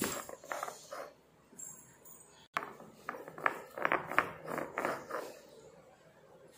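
Stone roller of a flat ammi grinding stone rolled back and forth over fresh henna leaves on the stone slab: a series of short, faint scrapes and knocks, stone on stone through the leaves. One sharp click about two and a half seconds in.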